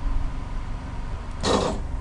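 Steady low background hum of a home recording setup, with a short breath-like rush of noise near the end.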